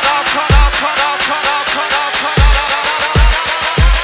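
Bass house music: a fast run of crisp hi-hat-like ticks over a heavy low kick and bass, with several deep bass hits that drop in pitch.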